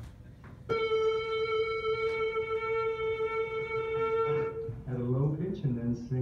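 A person's voice, recorded during a laryngoscopy with a scope down the throat, holds one long steady note without vibrato for about four seconds, then breaks into shorter, lower sounds that slide up and down in pitch.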